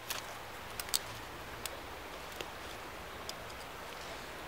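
Knife blade cutting into a wooden stick: a few faint, scattered clicks of the edge biting into the wood over a quiet background hiss.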